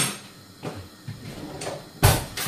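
A kitchen drawer being pulled open, with a few faint knocks and scrapes.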